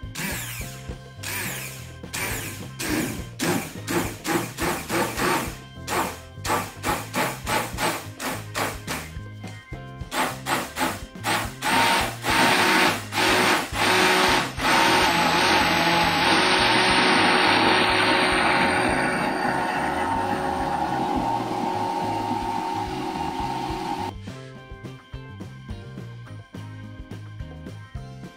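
Hand-held immersion blender puréeing soup in a stainless steel pot, blending it smooth. It runs in quick short pulses for the first ten seconds or so, then stays on continuously with a steady motor whine, and stops a couple of seconds before the end.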